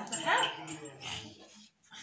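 A young child's short whimpering cry, rising in pitch, then fading away.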